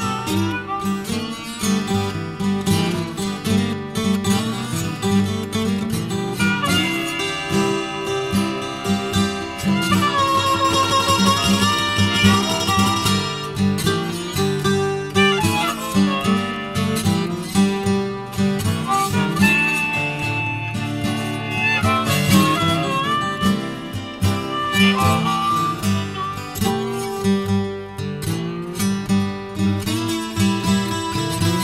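Acoustic blues instrumental break with no singing. Acoustic guitars pick a steady rhythm under a higher lead line.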